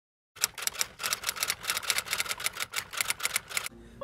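A rapid, irregular series of sharp key-like clicks, several a second, like typing. It starts a moment in and stops shortly before the end.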